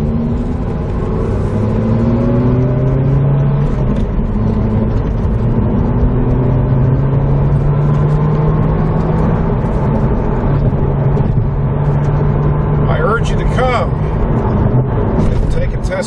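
The 2009 Corvette ZR1's supercharged 6.2-litre LS9 V8, heard from inside the cabin with road noise. It climbs in pitch as the car accelerates over the first few seconds, then runs at a steady cruise.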